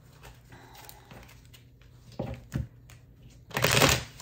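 A deck of tarot cards being handled and shuffled by hand: faint card clicks and soft knocks, then a loud, quick rustle of shuffled cards near the end.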